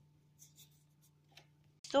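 Faint rustling and scraping of handmade paper number cards being handled and slid over cloth, a few soft short scratches, over a steady low hum.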